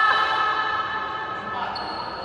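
Court shoes squeaking on an indoor badminton court floor: a high squeal held for over a second, bending in pitch about the start.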